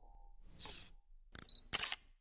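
Logo-sting sound effects: a short whoosh, then a quick run of sharp clicks and a brief bright burst like a camera shutter, as the tail of electronic music fades out.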